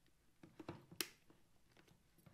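Plastic clicks as the detachable face mask is unlatched and pulled off a Scorpion EXO Covert three-quarter helmet: a few faint clicks about half a second in, then one sharp click about a second in.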